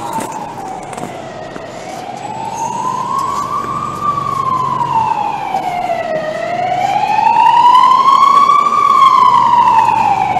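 Emergency-vehicle siren in a slow wail, its pitch rising and falling about every five seconds and growing louder toward the end, over city traffic.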